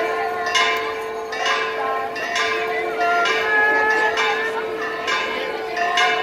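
Church bell ringing, struck roughly once a second, each stroke's tone ringing on into the next.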